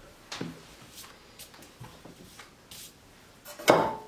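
Soft rustling and light taps of hands handling thin sheets of rolled baklava dough on a wooden board, with one louder knock that rings briefly near the end.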